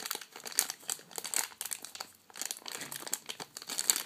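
Clear plastic bag crinkling as it is handled, an irregular run of crackles that eases off briefly about two seconds in.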